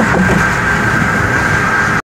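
Road and tyre noise inside the cabin of a car moving at highway speed, steady throughout, with a thin steady high tone that comes in about half a second in.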